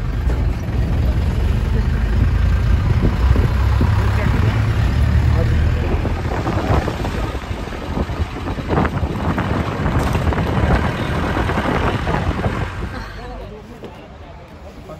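Engine and road noise inside the cabin of a moving Tata van: a heavy low rumble for the first half, then rougher noise with knocks and rattles, falling away near the end.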